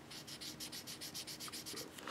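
Felt-tip marker rubbing back and forth on paper in quick, even colouring strokes, about seven a second. The scratching is faint.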